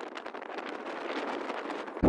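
Footsteps crunching through deep snow, a rapid run of short crunches and rustles, with light wind on the microphone.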